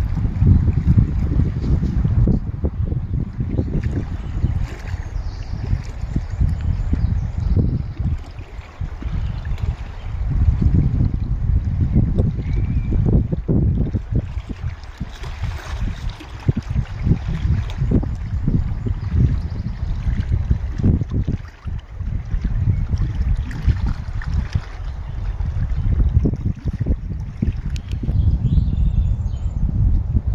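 Wind buffeting the microphone in uneven gusts, over small waves lapping against the stony shore of a reservoir.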